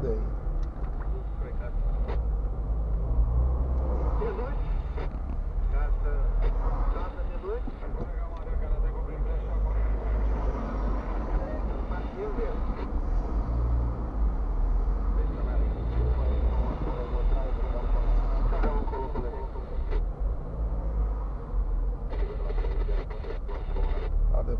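Steady low rumble inside a car's cabin, picked up by a dashcam, as the car idles and creeps forward in slow traffic.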